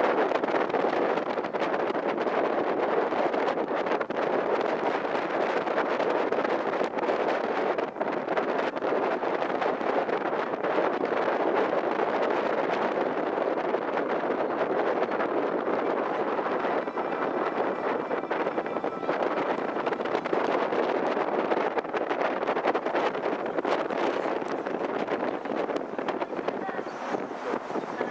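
Steady rush of wind and water on the open deck of a harbour cruise ship under way. The wind buffets the microphone.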